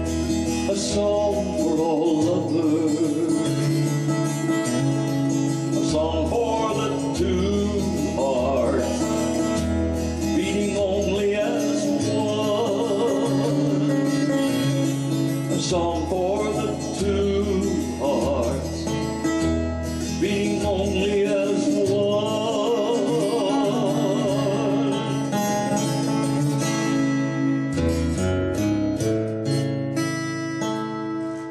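Music: a Taylor 8-string baritone acoustic guitar strummed, with low bass notes and a wavering, vibrato melody line over it, sung or played without clear words.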